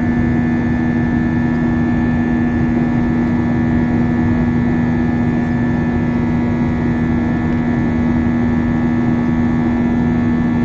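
Airbus A320's IAE V2500 jet engines heard from inside the passenger cabin during the climb after take-off. It is a loud, steady drone with a strong low hum tone and fainter higher whining tones.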